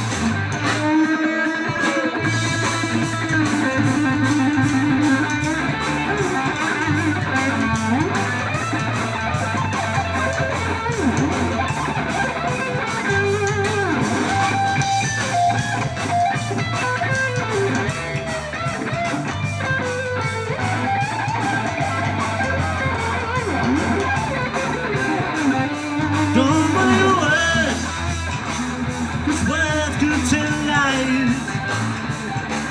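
Live rock band playing an instrumental break: an electric guitar leads with bent, wavering notes over bass guitar and drums, with steady cymbal strokes.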